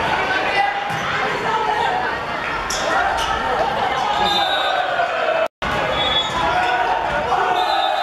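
Volleyball rally in a large hall: the ball being struck and hitting the wooden court under the shouts and cheers of players and spectators, echoing in the hall. The sound drops out for a moment a little past halfway.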